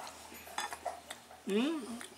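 A few light clinks of a metal fork and knife against a plate in the first second, between mouthfuls.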